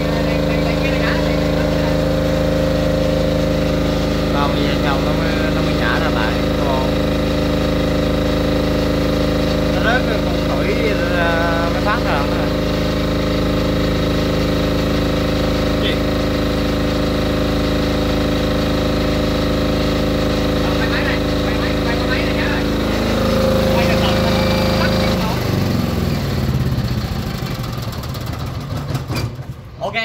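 Three-phase generator engine running steadily; about 23 seconds in its note changes, and a couple of seconds later it shuts down and winds to a stop. The stop comes under the automatic transfer switch panel being tested, after a timed run of about 30 seconds.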